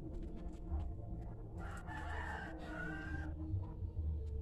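A rooster crows once, a call of under two seconds that starts a little before halfway through. Beneath it runs low rumbling handling noise with a few small clicks.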